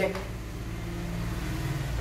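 A steady low hum, like a motor or engine, growing slightly louder toward the end.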